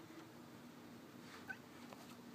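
Very faint rain ticking on skylight glass over a low steady hum, with one brief high-pitched sound about one and a half seconds in.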